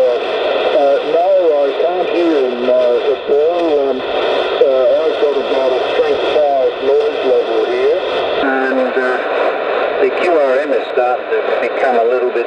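A distant amateur station's voice received on 40 metres through a Yaesu transceiver's speaker, thin and band-limited, over band noise with steady faint whistling tones. The background noise and tones change about eight and a half seconds in.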